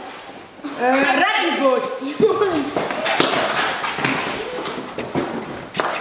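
A group of children shouting over each other, with scuffs and thumps as they drop down to sit on a concrete floor, loudest from about two seconds in.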